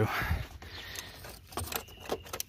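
A plastic wiring harness loom and its connector being handled and routed by hand: a rustle, then a few light clicks and rattles about one and a half seconds in.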